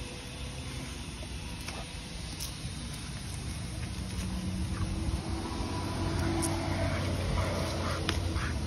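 A passing motor vehicle's engine, a low hum that grows louder over the second half.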